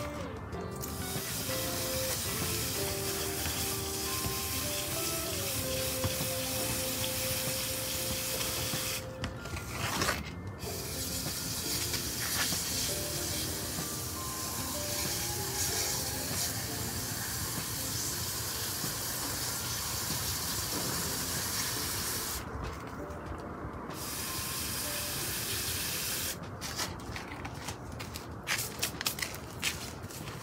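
Garden hose spray nozzle watering potted plants: a steady hiss of spray that shuts off briefly a few times and stops a few seconds before the end, giving way to light knocks and handling sounds.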